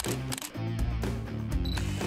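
Intro music with a steady bass line, overlaid with camera shutter-click sound effects and a short high beep near the end.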